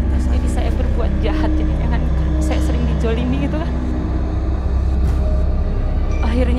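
A voice speaking over a deep, steady low drone in the background music.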